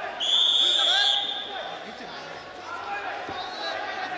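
A referee's whistle blown once near the start, a single shrill, steady note lasting about a second, over shouts from around the mat.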